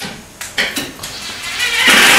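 Light metallic clicks and knocks as a set screw is fitted into a metal cabinet clip, then a cordless drill starts driving the screw just before the end.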